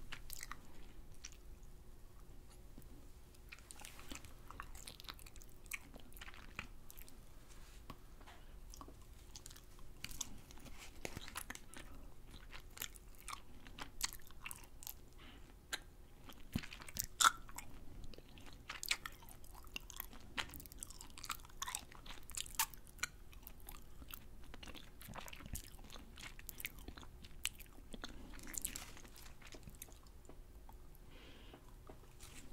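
Close-miked wet mouth sounds of a soft fruit jelly candy strip being sucked and chewed: sticky lip smacks and mouth clicks, coming thicker in the second half.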